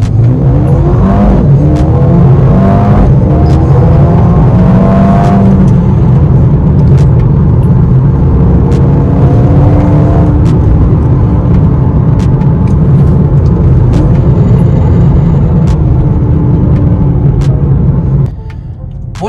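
Mercedes-AMG A35's turbocharged four-cylinder engine pulling hard in Sport Plus mode, heard from inside the cabin: the engine note climbs in pitch several times as it accelerates through the gears, over a steady loud low drone of engine and road, with occasional short sharp cracks.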